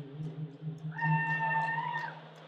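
A man singing through a stage PA: a low steady note, joined about a second in by a high held note that lasts about a second and dips as it ends.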